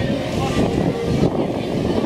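Crowd of people talking at once over a steady low outdoor rumble, with some wind on the microphone.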